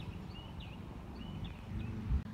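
Birds chirping, a string of short high calls, over a low steady rumble.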